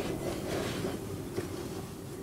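Hands kneading dough in a glass bowl, faint under a steady background hum, with a small click about one and a half seconds in.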